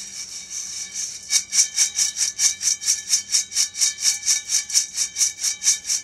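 Freshly roasted coffee beans rattling and swishing in a stainless steel colander that is shaken in quick, even tosses, about four or five a second, to keep them moving so they cool evenly and stop roasting.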